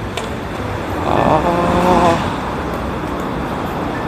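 Road traffic: a motor vehicle passes, its engine note swelling and fading about a second in, over steady traffic noise.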